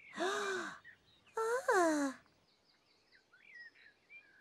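Po, the red Teletubby, gives a short breathy gasp, then a longer sighing 'ooh' that falls in pitch. Faint bird chirps follow in the second half.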